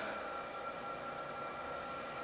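Room tone in a pause between speech: a steady, even hiss with a few faint steady tones.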